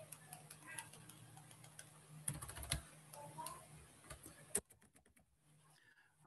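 Faint clicking of computer keys, in scattered strokes with a quick cluster about two and a half seconds in, on a computer that has frozen. Near the end the sound cuts out completely for over a second.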